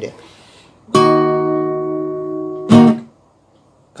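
A chord strummed on an acoustic guitar about a second in, left ringing and slowly fading, then strummed again more loudly and damped almost at once.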